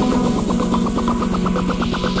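Electronic music build-up: a rapid synth pulse repeating about ten times a second over a held low bass tone, growing brighter.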